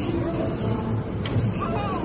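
Voices over steady outdoor background noise, with one sharp click about a second and a quarter in.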